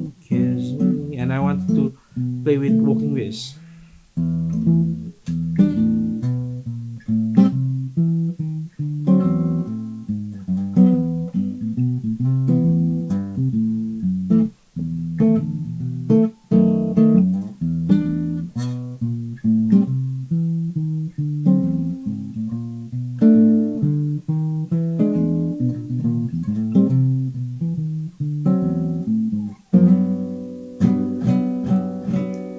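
Acoustic guitar playing a chord progression with seventh chords and passing chords, starting from E minor. Chords follow one another steadily, with a few brief breaks.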